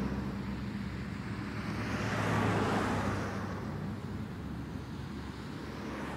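Street traffic with motorcycle engines running, swelling louder about two to three seconds in as a vehicle passes.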